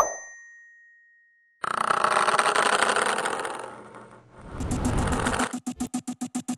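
A bright bell-like ding, a notification-bell sound effect, rings out and fades over about a second and a half. Then a loud, dense sound cuts in abruptly, and near the end it breaks into a fast, even pulsing.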